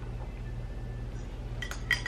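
Glassware clinking: a few light knocks of a glass bottle against a drinking glass, each with a short ring, bunched near the end over a steady low hum.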